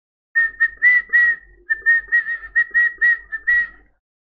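A high whistle at one steady pitch, sounded as a rapid run of short notes, about four a second, with a brief pause about a second and a half in.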